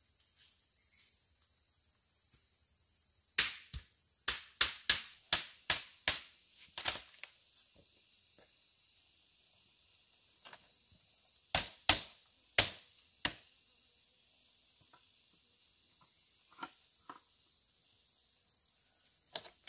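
Steady high-pitched insect chorus from the surrounding forest, broken by loud sharp knocks: a quick run of about ten a few seconds in, four more in the middle, and two faint ones near the end, the sound of work on bamboo.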